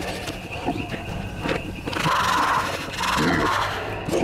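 Sound-designed dinosaur calls for an animated attack. Two loud cries, each just under a second, come about two and three seconds in, after softer scattered cries.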